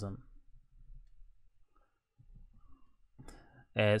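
Faint computer-keyboard clicks as an address is typed, with a man's voice trailing off at the start and speaking again near the end.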